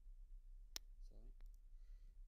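Two sharp clicks from computer input during a screen recording, about two-thirds of a second apart, with a brief low vocal murmur between them. Behind them is near silence with a steady low mains hum.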